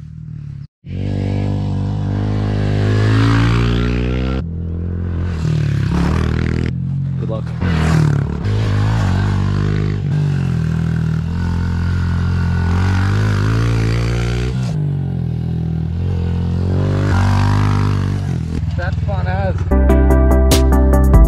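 Honda CRF110 pit bike's small single-cylinder four-stroke engine, starting about a second in, revving up and dropping back in pitch at each gear change, again and again.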